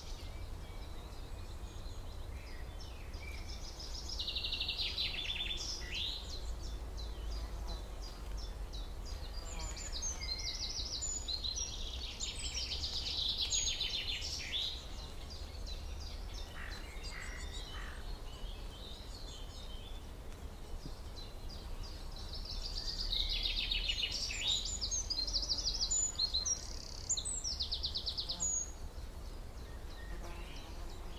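Small birds singing in three bouts of rapid, high trills and chirps, over a steady low rumble.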